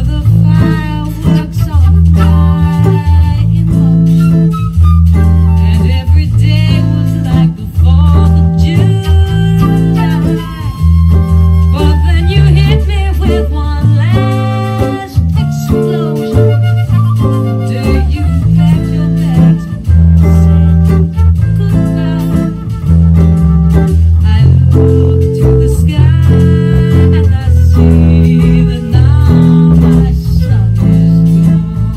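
Blues band recording in A minor with bass guitar and electric guitar, cycling through A minor 7 to E7 sharp 9 changes, with a hollow-body electric guitar played along with it.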